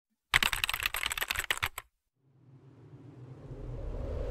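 A quick burst of keyboard-typing clicks lasting about a second and a half, used as a title-card sound effect. After a brief gap, a smooth swell of sound rises steadily toward the end.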